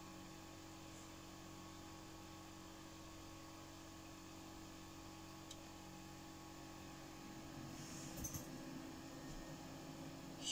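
Faint steady electrical hum from bench equipment, with several steady tones held throughout; a few faint rustles and small ticks near the end.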